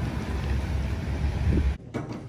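Wind buffeting the microphone outdoors: a steady low rumble that cuts off abruptly near the end.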